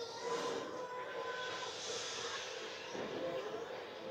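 A steady hiss with faint, thin whistle-like tones under it.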